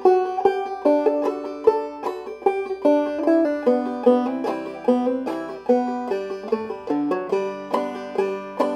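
Five-string banjo played clawhammer style: a steady run of plucked melody notes, with hammer-ons in place of plain quarter notes.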